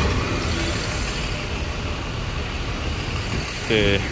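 Steady city road traffic noise: a continuous wash of engine and tyre sound from vehicles passing along the road.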